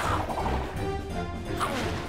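Cartoon soundtrack: action underscore music with whooshing swim-by sound effects as barracudas dart past, one sweeping whoosh about one and a half seconds in.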